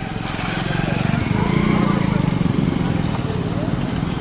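A motorcycle engine running close by with a fast, even putter, getting louder toward the middle and easing off again.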